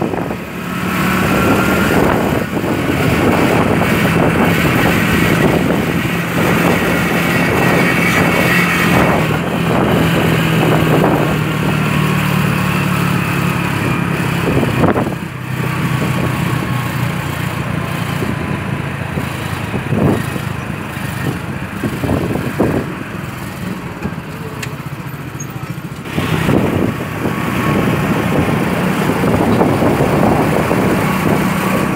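Motorcycle engine running while riding, with road and wind noise; it eases off for a few seconds past the middle and picks up again near the end.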